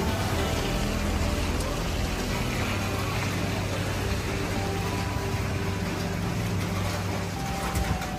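Steady city-street noise, a dense hiss with a low hum, with music playing in the background.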